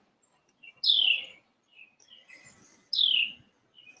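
A songbird calling: two short, clear notes, each falling in pitch, about two seconds apart, with a few fainter chirps between them.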